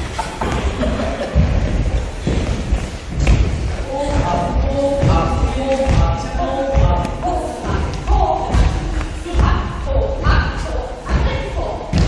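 Dancers' feet thudding and stamping on a wooden hall floor, many irregular thuds as a group steps and kicks in unison, echoing in a large hall. A voice talks over the thuds.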